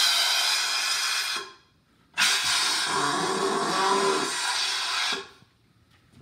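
Hand balloon pumps hissing as air is pushed into long modelling balloons, in two bursts: one about a second and a half long, then after a short pause a longer one of about three seconds.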